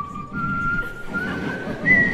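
A person whistling a few held notes that step up in pitch, ending on a higher, loudest note near the end.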